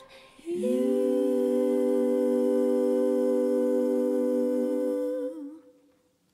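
A small vocal group holding a final chord in close harmony. The voices slide up into it about half a second in, hold it steady, waver briefly near the end and fade out.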